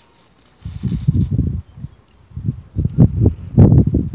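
Wind buffeting the microphone in loud, irregular low gusts, strongest toward the end, with a faint crinkle of a plastic bag in the first second.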